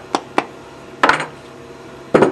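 A hammer tapping a soaked stiffener held against a wooden shoe last, marking its feather line: two light, sharp taps in the first half second, then a louder knock about a second in.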